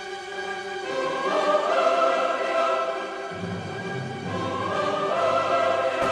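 Choral music with orchestral accompaniment: a choir singing long held chords, with a deeper bass part coming in about halfway through.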